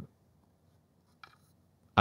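Near silence, broken about a second in by one faint, brief rub as the plastic teleprompter foot pedal is lifted and handled.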